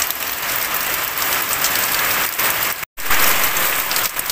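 Heavy rain falling steadily in a storm, with a brief dead gap in the sound about three seconds in.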